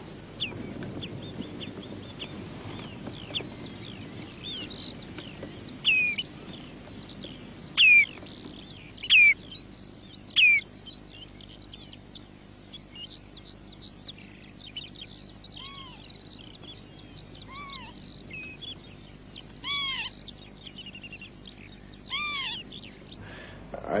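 Wild birds calling over open country: a busy run of short chirps and whistles, with four loud, sharply falling calls between about 6 and 11 seconds in. In the second half, lower arched calls are repeated every couple of seconds.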